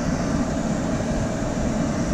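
Steady road and engine noise of a car driving along a street, heard from inside the cabin.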